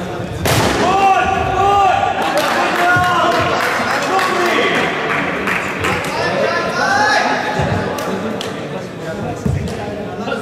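A cricket bat strikes the ball with a sharp crack about half a second in, followed by several seconds of players shouting and calling to each other, echoing in a large sports hall.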